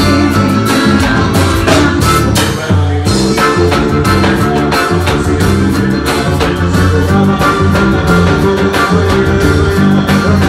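Loud live band music with drums, percussion and accordion playing to a steady beat.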